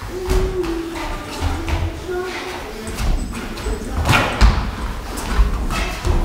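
Boxers sparring in a ring: irregular thuds and slaps of gloves and feet on the ring, several sharp hits about four to five seconds in, echoing in a large gym hall.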